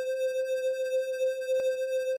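A software synth preset from FL Studio's 3xOsc plays one held, hollow-toned note, steady in pitch with a slight wobble in loudness, cutting off just after two seconds. One short click about one and a half seconds in.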